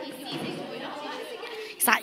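Indistinct chatter of several voices echoing in a large indoor hall, with a short, loud noise just before the end.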